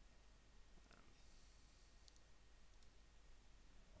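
Near silence: faint room tone with a few soft computer-mouse clicks, about one second in and again near three seconds.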